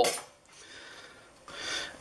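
A banana being peeled by hand: a short, soft tearing rustle of the peel coming away near the end.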